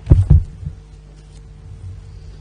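Two heavy low thumps in quick succession at the start, then a softer one, picked up close on the lectern microphone as it is handled or bumped. A steady low electrical hum lies under them.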